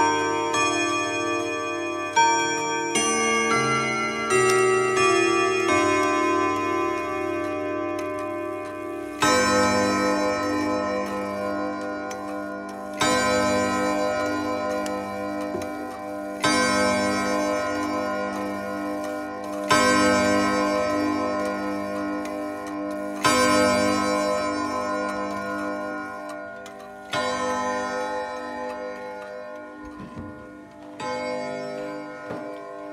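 Junghans wall clock's ten gong rods: the end of its chime melody, then the hour struck in six ringing chord strikes about three and a half seconds apart, each dying away before the next.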